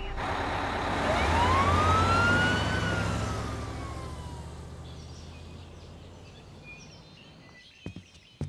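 Cartoon sound effect of a van driving off, its engine rumbling under a single siren wail that rises and then falls, the whole sound fading away into the distance.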